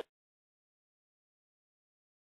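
Complete silence: the audio track drops out to nothing.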